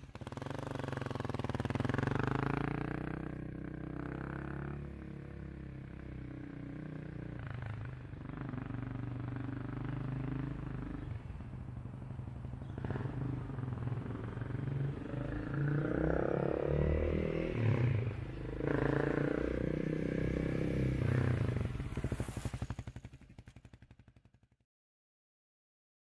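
Honda CBR250R single-cylinder engine running close by, a steady low rumble with its pitch rising and falling; the revs swell louder in the second half.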